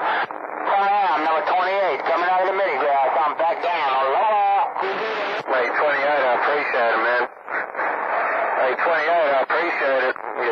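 Voices of distant CB stations received over skip, heard through a 12-volt mobile CB radio's speaker and too garbled to make out words; the signal drops briefly about seven seconds in.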